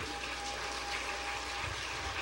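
Steady, even hiss of room and recording noise, with a faint thin steady tone held through most of it.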